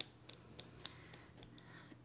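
A handful of faint, scattered small clicks as tweezers pluck at the loose threads of a cut sweatshirt sleeve edge, fraying it.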